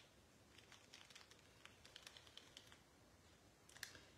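Near silence with faint, scattered light clicks and taps of a paintbrush and small craft pieces being handled on a table, two slightly sharper ticks just before the end.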